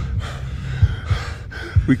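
A person breathing hard and gasping between spoken lines, over a steady low bass bed with a few dull low thuds.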